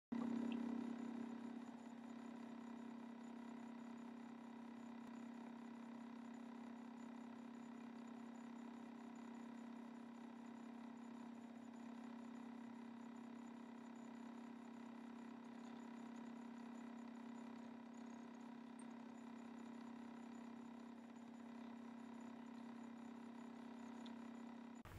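Faint steady electrical hum made of a few constant tones, a little louder in the first second or two and then unchanging; no other sound.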